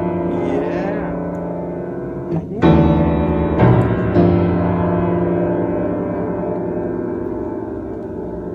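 Upright piano keys pressed by a baby's feet: several notes at once sounding as jumbled clusters that ring on and slowly fade. New clusters are struck about two and a half, three and a half and four seconds in, the loudest moments.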